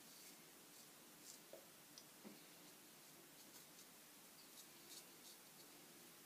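Faint, short scratches of a Dovo shavette's Fromm blade cutting through lathered whiskers, a stroke every second or so.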